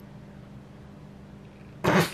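Quiet room tone with a steady low hum, then a woman's single short, loud cough near the end.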